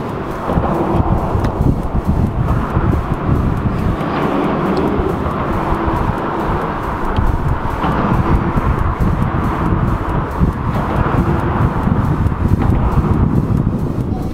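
Gusty wind buffeting an outdoor microphone in a steady rumble, with music playing underneath.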